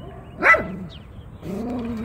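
A dog barks once, sharply and loudly, about half a second in. A longer, lower, drawn-out voice-like sound follows near the end.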